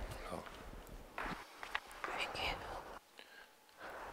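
Faint, low-voiced speech, close to a whisper, during a pause in the talk; it dies down to near quiet about three seconds in.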